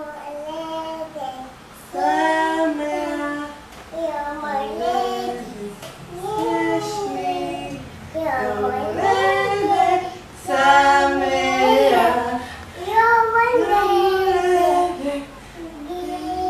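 A small child singing a birthday song in short phrases, with brief pauses between them.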